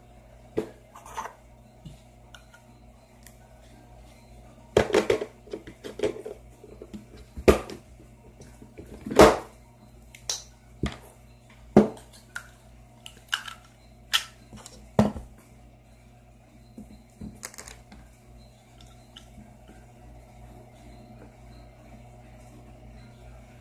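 Irregular clicks and knocks of small hard plastic craft pieces and a tool being handled and set down on a tabletop, about a dozen in all, the loudest in the middle stretch.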